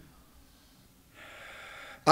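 A man's audible in-breath into a close lectern microphone, starting about a second in and lasting just under a second, drawn before he speaks again.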